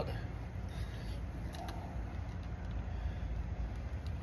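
Quiet background: a steady low rumble with a few faint clicks, such as a phone being handled.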